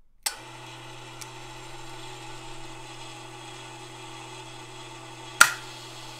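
A click as the AI-9 APU's start-sequence programme mechanism switches on, then the steady hum of its small electric motor turning the timer. About five seconds in comes a sharp, loud clack of a power relay closing to switch in the ignition.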